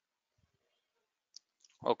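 Mostly near silence, with a couple of faint low thumps about half a second in and a short, sharp click a little after one second. A man starts speaking near the end.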